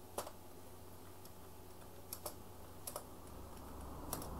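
A few separate computer-keyboard keystrokes over a low steady hum: one about a quarter second in, a quick pair around two seconds, and another pair near three seconds.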